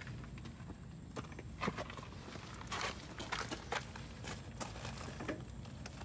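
Footsteps crunching on gravel: scattered, irregular light crunches over a steady low rumble.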